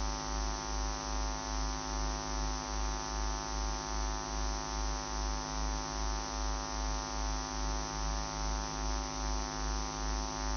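Steady electrical mains hum and buzz, with a low throb pulsing a little over twice a second.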